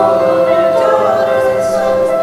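A small mixed group of young men and women singing together in harmony at microphones, holding long notes.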